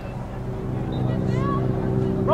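A steady engine hum that grows louder, with a distant voice calling out over it.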